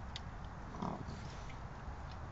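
An animal at metal food bowls on a concrete patio: a few faint clicks, then one short low sound a little under a second in, over the steady low hiss of a security camera's microphone.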